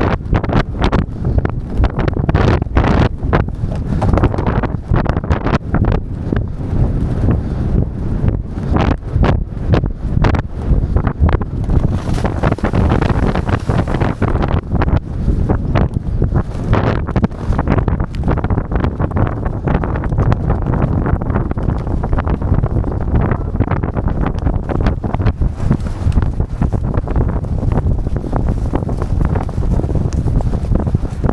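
Heavy wind buffeting the microphone of a camera carried on a galloping racehorse, with the horse's hooves thudding on turf underneath, steady throughout.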